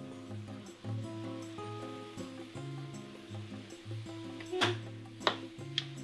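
Background music with a melody and bass line. Near the end, three short knocks as a wooden spatula strikes the steel pot while the ground beef is stirred.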